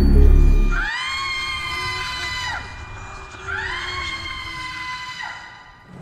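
Trailer soundtrack: a loud low musical drone cuts off about a second in, followed by two long high-pitched wails, each swooping up at the start, held for nearly two seconds, then dropping away.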